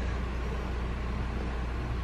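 Steady low hum with a faint even background hiss, with no distinct sound events.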